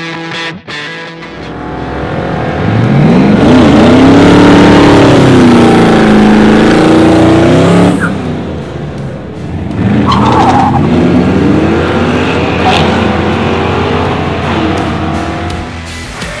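LS1 V8 in a swapped Rambler revving hard through a drag-strip burnout, the engine note sweeping up and down for several seconds while the tyres spin. After a brief drop about eight seconds in, it revs up again in rising sweeps as the car pulls away down the track.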